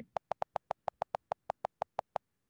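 iPad on-screen keyboard's delete-key click repeating quickly and evenly, about seven clicks a second, as the held delete key erases the title text one character at a time.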